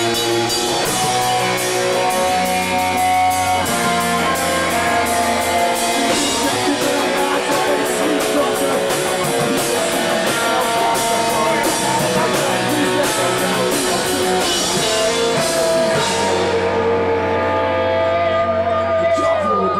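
Live punk-hardcore rock band playing loud, with electric guitars holding chords over drums and dense cymbal hits. Near the end the drums stop and the guitars ring on alone.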